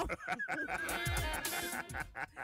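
A comic radio sound effect with a wavering, honk-like tone, a falling low sweep beneath it about a second in, and a hiss near the end.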